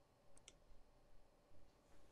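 Near silence: room tone, with a couple of faint clicks about half a second in.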